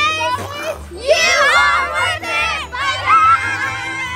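Several children shouting and squealing excitedly over one another during a chase game, with laughter.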